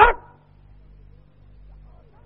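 A man's spoken word cut off at the very start, then a pause in which only the faint steady hiss and low hum of an old tape recording remain.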